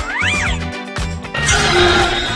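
Background music with a steady beat, with a short cat meow sound effect that rises then falls near the start. About a second and a half in, a loud noisy burst joins the music.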